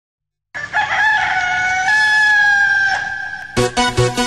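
A sampled rooster crow, one long call in two parts, opening a 1990s happy hardcore track. About three and a half seconds in, a fast, hard electronic dance beat cuts in abruptly.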